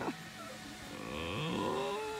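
A person's voice letting out a drawn-out 'ooo' that rises in pitch from about halfway through and is held near the end.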